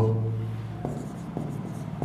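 Marker pen scratching on a whiteboard as a word is written, with a couple of light taps of the tip partway through.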